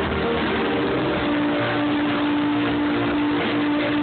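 A live rock band playing loud through a coarse, overloaded phone recording, a single note held steadily from about a second in.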